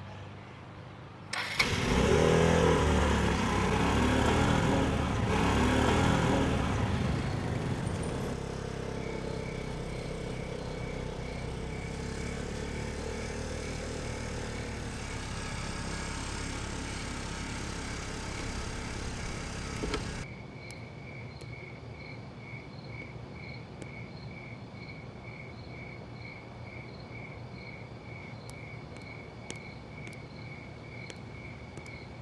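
Motorbike engine, loud for the first few seconds and then running more steadily. It stops abruptly about twenty seconds in, leaving insects chirping in an even, pulsing rhythm.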